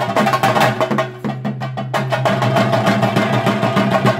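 Fast, dense chenda drumming, the percussion that accompanies a theyyam, over a steady held tone. The drum strokes break off briefly a little over a second in, then resume.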